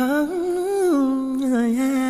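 A solo voice humming a slow melody, gliding into its first note and then moving smoothly between long held notes, over faint sustained backing.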